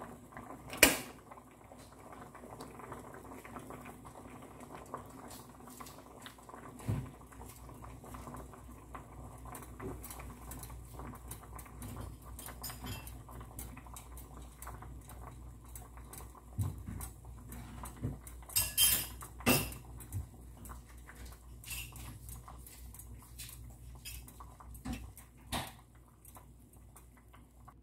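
Water with pieces of ginger boiling in a small stainless-steel saucepan on an electric coil burner, a steady bubbling. It is broken by a few sharp clicks, the loudest about a second in and a cluster in the second half.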